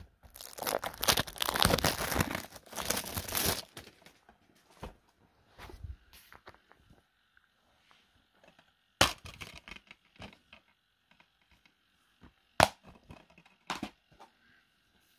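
Handling noise: about three seconds of dense crinkling and rustling, then quiet broken by a few sharp plastic clicks as Blu-ray cases are handled and set down.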